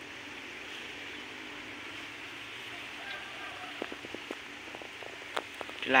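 Steady outdoor background hiss, with a few faint clicks and ticks in the second half.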